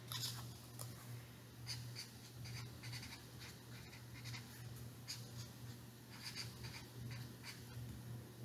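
Felt-tip marker writing on a small square of construction paper: faint, irregular scratching strokes as the letters are drawn, over a low steady hum.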